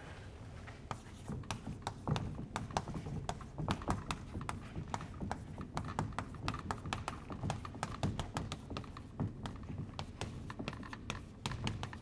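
Chalk writing on a blackboard: an irregular, rapid run of short taps and scratches as the letters are written.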